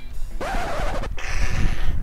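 Loud rushing noise with an irregular low rumble, beginning about half a second in: wind buffeting the microphone.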